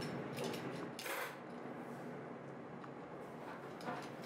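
Kitchen knife trimming fresh beets on a plastic cutting board: a few light clicks and a short scrape about a second in, then quiet kitchen room tone.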